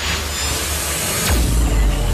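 Logo-intro sound effect: a loud whoosh of noise over a deep bass rumble, with a quick falling sweep about a second in and the bass swelling to its heaviest near the end.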